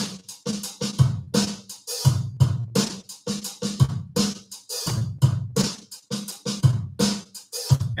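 Steel-string acoustic guitar strummed in a steady rhythmic pattern, sharp strokes about two to three a second, each chord ringing only briefly before the next.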